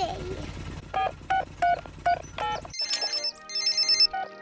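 Six short electronic keypad beeps of a cartoon mobile phone being dialled over the low hum of a helicopter cabin. About three seconds in, a mobile phone starts ringing with a high repeating electronic trill.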